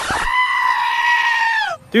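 One long, high scream with a bleat-like tone, held about a second and a half, then falling in pitch as it stops.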